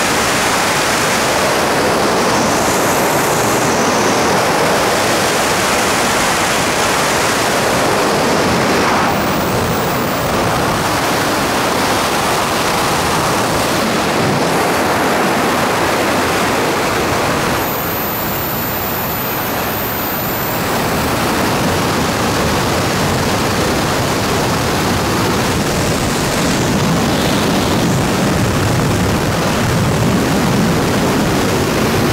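Loud, steady rush of freefall wind blasting over a skydiving camera's microphone, dipping slightly a couple of times as the camera flyer shifts position.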